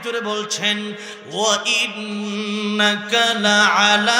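A man's voice chanting in a melodic, sliding tune into a public-address microphone, the sung recitation style of a Bengali waz sermon. Under it runs a steady low hum.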